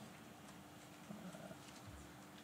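Near silence: conference-room tone with a faint steady hum and a few faint scattered ticks.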